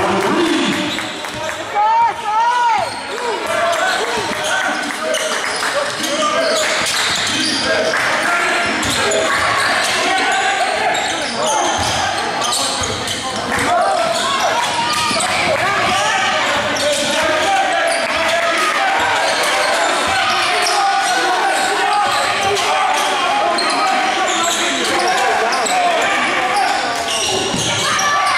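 Basketball game in a gym: the ball bouncing on the hardwood floor and sneakers squeaking, under a steady din of indistinct voices from players and spectators, echoing in the hall.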